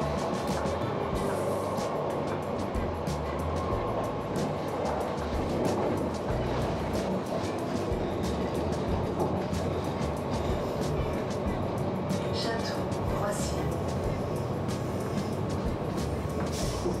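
An RER commuter train running along the line, heard from inside the carriage as a steady rumble.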